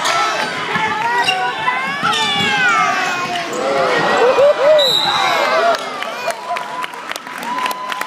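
Gym crowd and players shouting during a basketball game, with the ball bouncing on the hardwood court. Sharp knocks and claps come toward the end.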